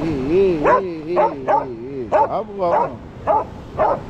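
A dog whining in a long wavering tone, then yipping in short excited yelps, about two a second.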